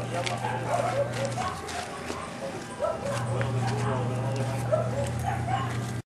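A dog barking repeatedly, with voices in the background and a steady low hum that drops out for about a second and a half near the middle.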